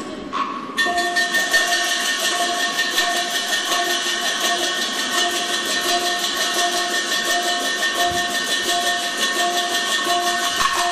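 Teochew opera percussion band, drum with gongs and cymbals, playing a fast, continuous run of strokes that comes in about a second in, with gongs ringing steadily under it.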